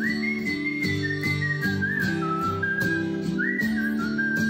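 Music: a whistled melody of long held notes that glide from one pitch to the next, over strummed acoustic guitar chords with a steady strumming rhythm.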